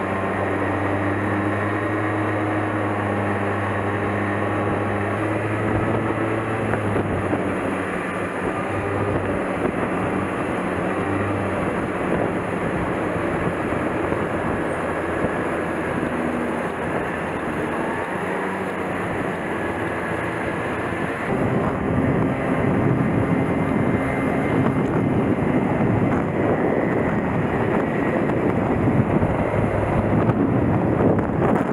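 Street go-kart engine running steadily with road noise while driving. About two-thirds of the way in, wind rushing on the microphone grows louder.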